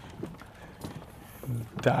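A few light clicks and taps, then a man's voice near the end.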